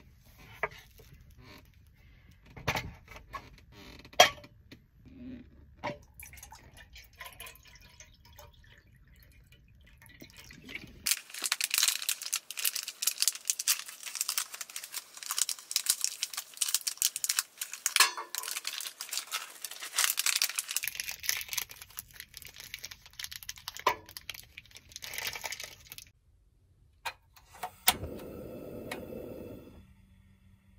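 A foil-wrapped hot-pot stock cube being unwrapped over a pot, a dense crinkling crackle of about ten seconds, after some light knocks of things being handled. Near the end an Iwatani cassette gas stove clicks and its burner lights with a steady hiss.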